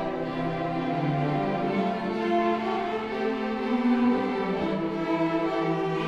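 Youth string orchestra playing, violins over cellos and basses, holding long bowed notes that change pitch every second or two.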